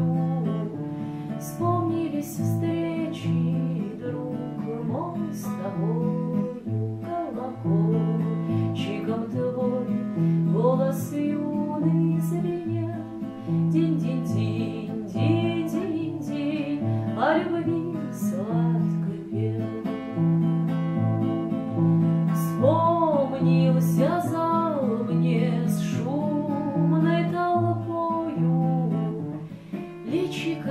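A woman singing a Russian song, accompanying herself on an acoustic guitar with a steady alternating bass-and-strum pattern.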